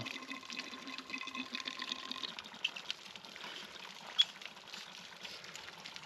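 Water trickling and dripping at a center pivot sprinkler drop hose while its plastic nozzle is fitted back on, with small plastic ticks and one sharp click about four seconds in.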